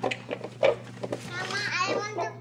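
A young girl's voice: short vocal sounds early on, then a longer high-pitched vocalisation in the second half, over a steady low hum.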